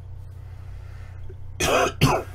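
A man coughs into his fist: a short, harsh burst about one and a half seconds in, running straight into a second one.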